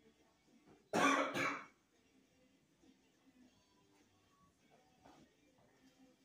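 A man clearing his throat: two quick coughs back to back about a second in, over faint background music.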